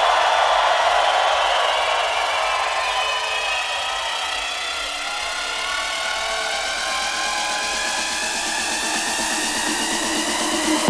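Electronic dance music build-up without a beat: a steady rush of noise with slowly rising sweeping tones, leading into a bass-heavy drop just after. Crowd cheering is loudest in the first second or two.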